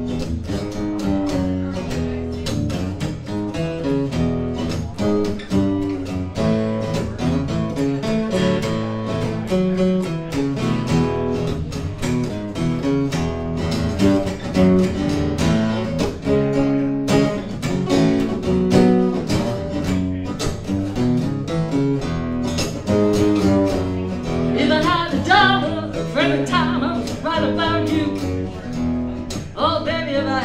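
Two acoustic guitars played together live, strummed and picked in a blues instrumental passage. A singing voice comes in over the guitars near the end.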